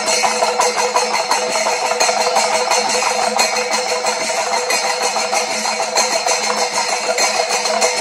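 Panchavadyam percussion in a thimila-led passage: several thimila hourglass drums struck rapidly with the hands in a dense, driving rhythm, over the steady clashing and ringing of ilathalam hand cymbals.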